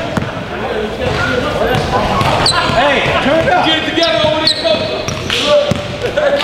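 Basketball being dribbled on an indoor court, its bounces echoing in a large gym, under players' and spectators' voices.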